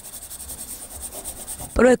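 Pencil scratching on paper in quick, rapid sketching strokes. A voice starts speaking near the end.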